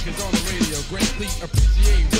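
Old-school hip hop track: rapped vocals over a beat with long, deep bass notes, one coming in about one and a half seconds in.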